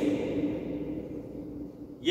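A man's voice drawn out on one steady low note that fades away over about a second and a half, then a short pause.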